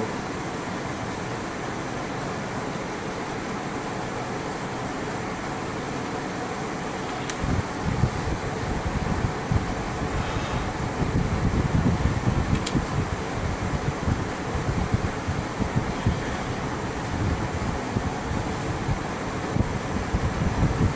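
Steady machine-like room noise, the kind a fan or air conditioner makes. From about seven seconds in, irregular low rumbling joins it.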